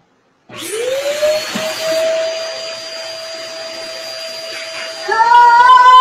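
Vacuum cleaner motor starting up as it is plugged in: a whine that rises in pitch and then holds steady over a rush of air. About five seconds in, a loud, wavering high-pitched cry joins over it.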